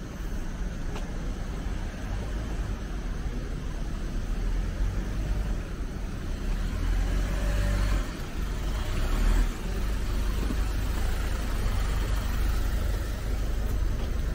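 Street traffic: a small box truck's engine running close by, over a steady low rumble of other vehicles.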